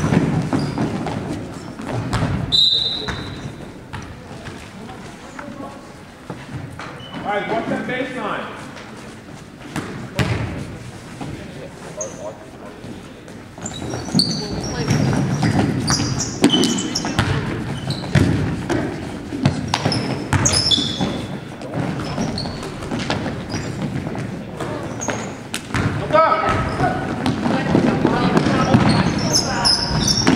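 Basketball game in a gym: a basketball bouncing on the hardwood floor, short high sneaker squeaks, and players' and onlookers' voices calling out, all echoing in the hall.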